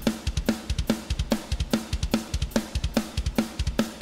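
Electronic drum kit played through a sampled metal drum library: a steady rock beat with fast, frequent kick drum strokes, a snare hit about two and a half times a second, and cymbals.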